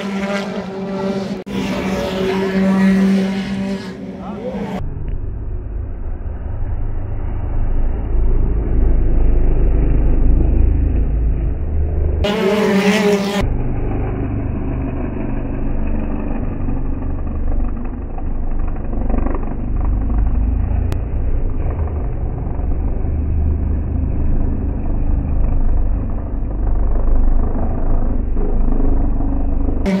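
BTCC touring car engines passing, with the engine notes sliding in pitch for the first few seconds and again briefly about twelve seconds in. In between, the sound is slowed down into a low, muffled rumble as the footage plays in slow motion.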